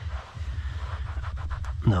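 Microfibre towel rubbing across a leather car seat in a soft, scuffing wipe, over a steady low hum.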